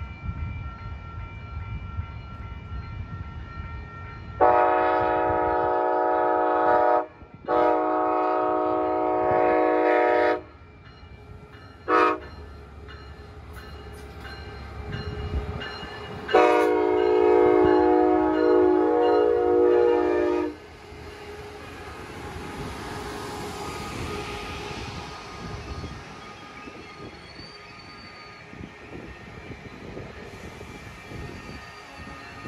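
Amtrak Pacific Surfliner's Siemens Charger diesel locomotive sounding its horn in four blasts (long, long, short, long: the grade-crossing pattern) as it approaches. Then the locomotive and bilevel coaches roll past with a steady rumble and hiss.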